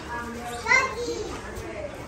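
Small children's voices at play, with one child's high-pitched voice rising sharply a little under a second in, and quieter voices around it.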